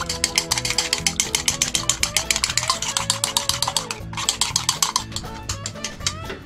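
Chopsticks beating raw eggs in a bowl: a fast, even clicking, several strokes a second, with a short pause about two-thirds through and stopping near the end. Background music plays underneath.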